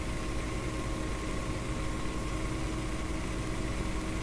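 Steady background hum and hiss with a few faint steady tones, unchanging throughout.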